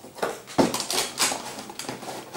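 Cardboard and plastic packaging of a toy advent calendar being handled: a string of short rustles and clicks at irregular spacing.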